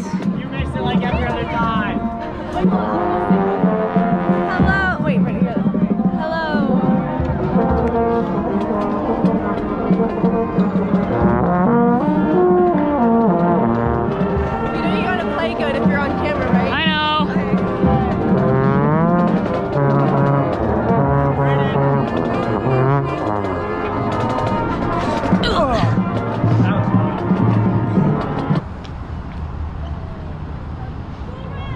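High school marching band brass playing, with a trombone played right at the microphone standing out above the rest of the band. The music stops abruptly about a second and a half before the end.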